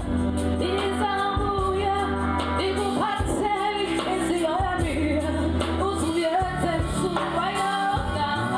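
A woman singing lead with a live band, her voice gliding up and down over steady bass notes and a regular beat.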